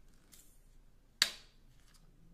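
Plastic water bottle being opened by hand: faint rustling, then one sharp crack about a second in as the screw cap is twisted loose.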